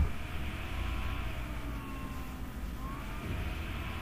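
Faint distant road traffic: a low steady rumble, with faint tones gliding slowly up and down.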